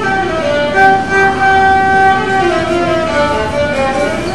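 Violin played solo: a melody with one long held note about a second in, then several notes stepping down in pitch.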